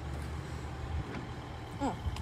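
BMW X1's bonnet being released at its front safety catch and lifted open, heard only faintly under a steady low rumble, with a faint click about a second in. A brief voice sound comes near the end.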